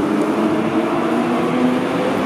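Steady outdoor beach ambience: an even wash of noise with a faint low hum beneath it.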